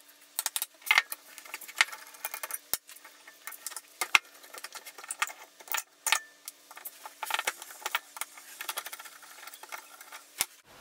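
Steel and cast-iron parts of a 1930s Stanley Bailey No. 4 hand plane clinking and clicking as it is taken apart by hand: many irregular metallic clinks and knocks as parts are handled and set down, with a screwdriver working at the frog screws near the end.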